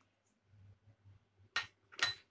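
Diced raw pumpkin pieces being tossed by hand in a plastic colander: mostly faint, with one short, louder rustle of the pieces about one and a half seconds in.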